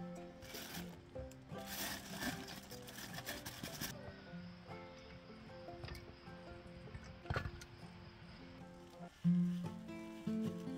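Background instrumental music with sustained notes. In the first few seconds a rushing noise is heard under it, and there is one sharp click about seven seconds in.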